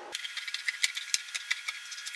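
Fabric scissors cutting across folded layers of blouse fabric: a quick, irregular run of short, crisp snips.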